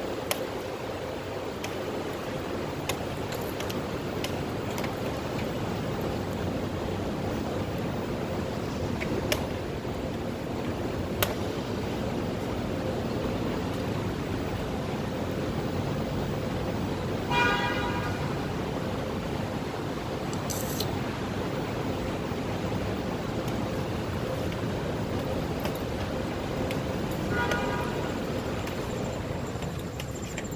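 Steady industrial background noise inside a large factory warehouse, with a faint steady tone and a few sharp clicks. A vehicle horn gives two short toots, about ten seconds apart, the second fainter.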